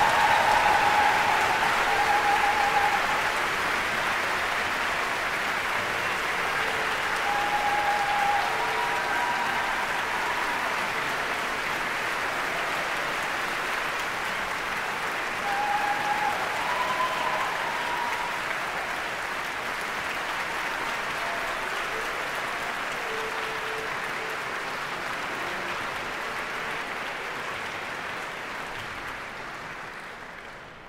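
Large audience applauding, loudest at the start, swelling again briefly about halfway through, then slowly dying away.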